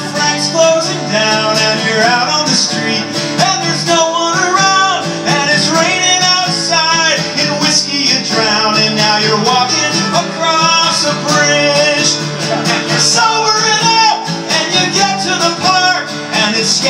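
Live acoustic folk-rock song: a man singing over two strummed acoustic guitars.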